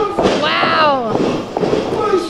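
Sharp smacks of wrestling strikes landing on a body in the ring, with a loud yell that rises and falls in pitch in the first second.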